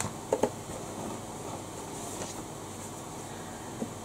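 Electric pedestal fan running steadily, with a couple of brief knocks about half a second in from handling makeup packaging.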